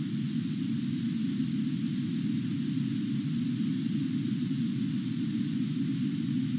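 Steady hiss with a low hum underneath, the background noise of a voice recording in a pause without speech.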